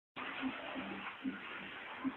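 Steady rushing noise with faint voices in the background.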